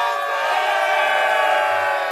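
A group of men shouting together in one long, loud victory cheer, many voices held at once before it fades near the end.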